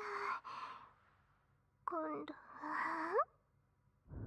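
A woman's breathy sighs mixed with short voiced sounds: one sigh trailing off right at the start, then a brief voiced sound about two seconds in and a breathy one that rises in pitch near the end.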